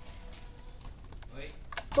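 A few light clicks and crackles of a cut plastic bottle being handled by hand, bunched in the second half, with a short spoken greeting near the end.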